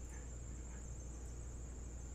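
Steady background room tone: a constant low electrical hum with a thin, steady high-pitched whine over it, and no distinct events.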